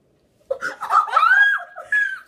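Girls laughing, a high-pitched squealing laugh that breaks out about half a second in.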